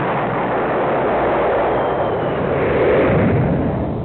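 Intro sound effect: a long rumbling explosion-like blast that swells about three seconds in and then fades out near the end.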